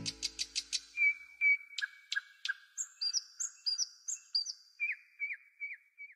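Birds chirping and whistling as the song's last chord dies away: a rapid run of short high chirps, then repeated hooked whistled notes at several pitches, stopping just before the end.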